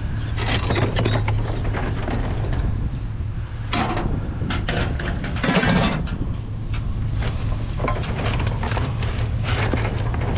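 Scrap metal pieces clanking and knocking irregularly as they are handled and shifted in a plastic trash can, over a steady low hum. The loudest knocks come about four seconds in and again near six seconds.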